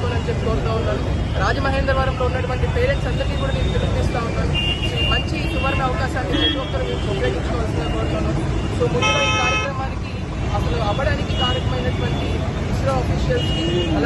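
A man's voice speaking over a steady street-traffic rumble. A vehicle horn sounds once for about a second, roughly nine seconds in.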